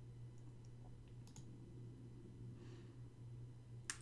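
Quiet room tone with a low steady hum and a few faint computer mouse clicks in the first second and a half.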